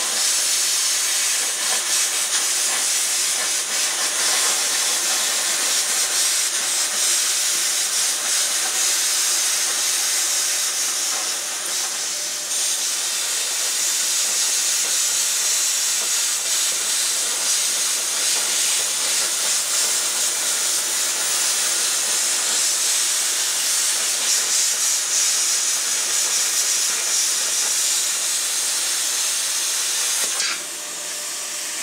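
Titanium Plasma 45 plasma cutter cutting through steel plate: a loud, steady hiss of the plasma arc and its compressed air, with a brief dip about twelve seconds in.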